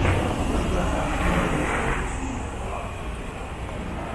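A car passing on a city street, its noise swelling over the first two seconds and then easing off.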